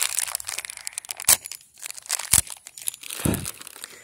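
Plastic bags crinkling as they are handled, a string of crackles with a couple of sharper loud cracks.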